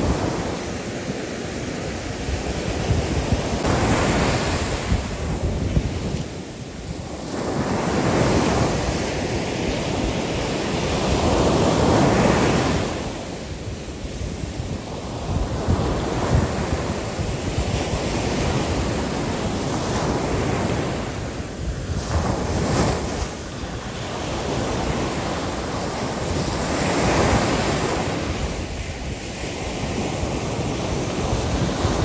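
Ocean surf breaking and washing up a sandy beach, the rush of water swelling and falling away every few seconds.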